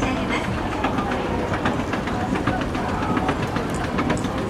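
Hitachi up escalator running, a steady mechanical rumble with rapid light clicking and clattering from the moving steps, heard while riding it to the top landing.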